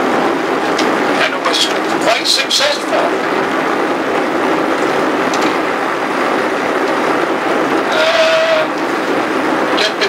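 Steady road and engine noise inside a moving car, heard through a home audio recording, with a faint voice murmuring briefly a couple of times.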